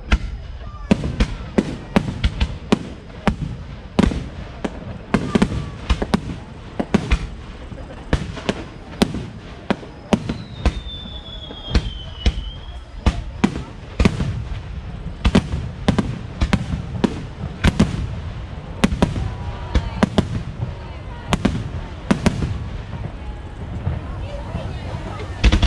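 A fireworks display: aerial shells bursting in a string of sharp bangs, about one or two a second, with a high, slightly falling whistle near the middle.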